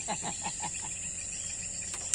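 Steady, high-pitched insect chirring in the background, with a voice trailing off in the first moment.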